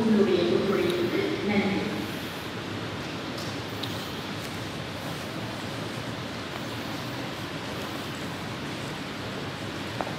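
Steady, even rushing noise of a metro station platform, after a brief voice in the first two seconds.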